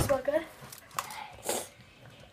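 Handling noises from an opened chocolate bar and its wrapper: a sharp knock at the start, a brief vocal sound, a few light clicks, and a short rustle about one and a half seconds in.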